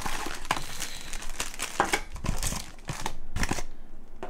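Packaging handled while unboxing: a small cardboard box opened and plastic accessory bags crinkling, with a few sharp clicks and knocks as items are set down on the desk.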